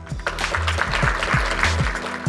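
Audience applauding over background music with a steady beat.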